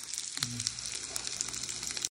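Tofu and sliced deer meat sizzling in oil in an electric hot pot, a steady crackle of many small pops. A short low voice sound comes about half a second in.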